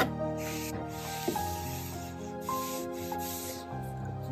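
A cloth wiping along a wooden furniture top in repeated strokes, each stroke a short hiss. Background music with sustained notes plays under it.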